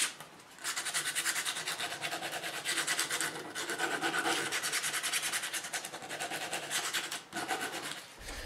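Folded sandpaper rubbed by hand in quick back-and-forth strokes along the edges of a knife's handle scales, rounding them off. There are short pauses just after the start and again near the end.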